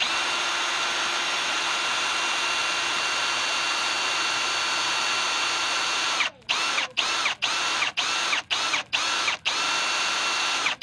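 Milwaukee M18 cordless drill boring a rivet hole through aluminum angle and a solar panel's aluminum frame. It runs steadily for about six seconds, then in short bursts of about two a second, each one rising in pitch as it starts.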